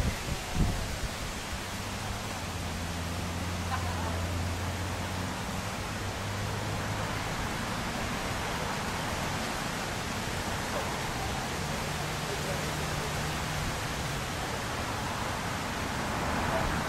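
Steady rushing noise of wind and water on a river. A low hum comes up twice for a few seconds.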